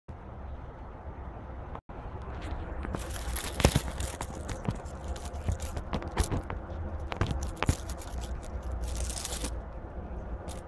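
Irregular rustling, scraping and crackling with many sharp clicks over a steady low hum. The sound cuts out briefly about two seconds in.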